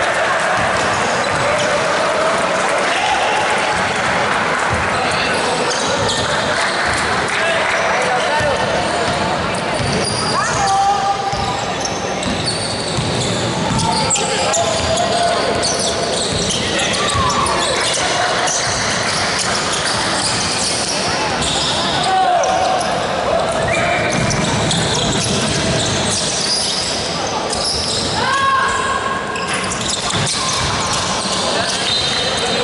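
Indoor basketball game: a basketball bouncing on a wooden court amid players' and spectators' shouting, with the echo of a large gym hall.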